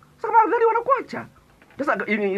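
A man's voice raised into a high, wavering falsetto for about a second, then a short pause before ordinary speech resumes near the end.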